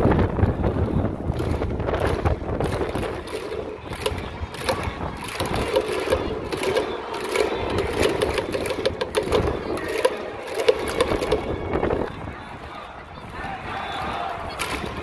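A large crowd of baseball fans chanting together in rhythm, with rhythmic clapping, in organised cheering for the batting team; the chant falls away about two seconds before the end.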